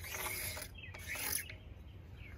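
Scuffing and rubbing noises from handling and moving about, in two short spells about a second apart.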